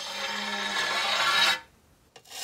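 Panes of glass scraped against each other by gloved hands: one long grating rub with a faint ringing in it, which stops suddenly about one and a half seconds in.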